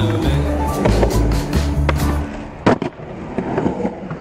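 A music track with a heavy bass beat stops about halfway through. Then skateboard wheels roll on a concrete bowl, with one sharp clack of the board, and the sound fades out near the end.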